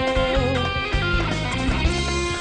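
Live band playing an instrumental passage of a Bahian pop/MPB song: electric guitar picking a melody over bass and drums. A held sung note ends about half a second in.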